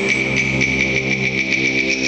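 A concert band of wind instruments and percussion playing held chords, with a fast, even pulse of about five strokes a second high above them.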